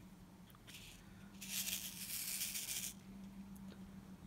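Small resin diamond-painting drills rattling as they are handled in a tray, a short rustling rattle about a second and a half long, with a faint click shortly before it.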